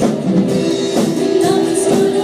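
A live worship band playing a song: women singing over drum kit, bass guitar and keyboard, with a drum hit about once a second.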